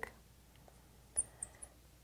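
A marker on a glass drawing board giving a few short, high squeaks, the first and loudest about a second in, with two fainter ones just after.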